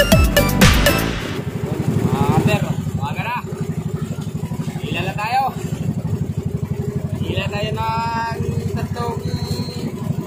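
Electronic dance music for about the first second, then a fishing outrigger boat's engine running steadily under way at sea, with a few voices calling out over it.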